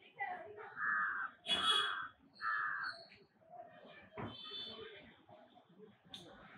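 A crow cawing: three harsh calls about a second apart in the first three seconds, followed by fainter outdoor background and a short knock about four seconds in.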